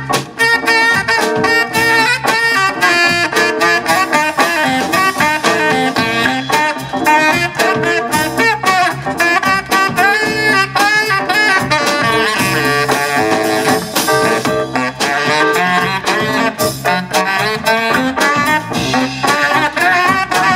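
A live jazz-funk band playing: alto and tenor saxophones over drums, electric bass and keyboard, with a steady beat throughout.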